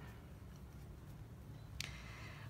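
Quiet room tone with a faint low hum, and one brief soft noise near the end.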